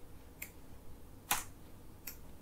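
Two short clicks from computer controls: a faint one about half a second in and a louder one past the middle, over a quiet room.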